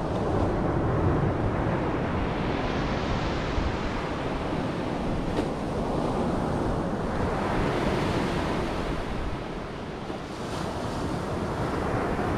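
Ocean surf washing onto a sandy beach, a steady rush that swells and eases twice, with wind buffeting the microphone.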